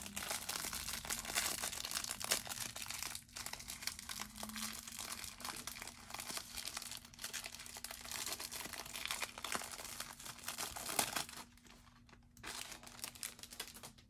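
Thin clear plastic wrap crinkling and tearing as it is peeled off a stack of trading cards. The crackle goes on for about eleven seconds, then drops off, with one short rustle near the end.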